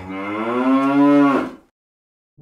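A long, low drawn-out call that rises in pitch and stops about a second and a half in.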